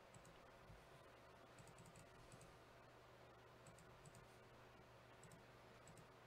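Near silence: room tone with a steady low hum and faint clicks in small clusters, from someone working a computer.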